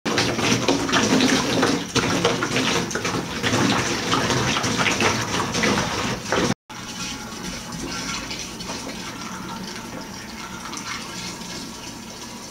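Liquid nutrient solution poured from a large plastic water-cooler jug through a plastic funnel into a plastic jerrycan, splashing and gurgling as it runs in. It breaks off for a moment just past halfway and then carries on somewhat quieter.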